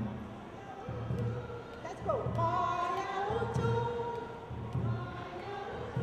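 A woman singing a song into a microphone, with held notes and a sliding note about two seconds in, over a steady low drum beat.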